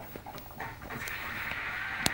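British bulldog breathing noisily and snuffling at its food bowl, with a few short clicks early, then a steady raspy breath setting in about a second in.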